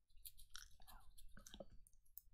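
Near silence with faint, scattered mouth and lip clicks close to a headset microphone.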